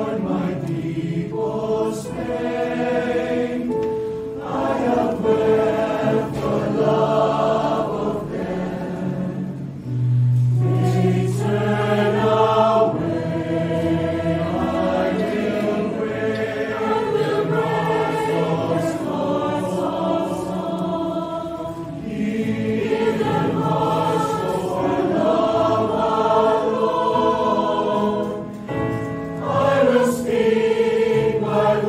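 Mixed choir of men and women singing together, several voice parts sounding at once, with long held notes and brief breath pauses.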